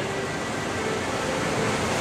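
Steady hiss of background room noise, even and unchanging.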